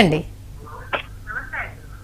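Speech: a woman's spoken greeting ends, then a faint, thin voice comes over a telephone line.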